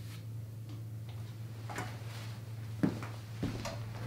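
A few faint, scattered knocks and clicks as a person gets up from a chair and moves away, over a steady low electrical hum.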